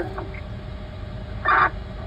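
A dog barks once, short and sharp, about a second and a half in, over a steady low background rumble.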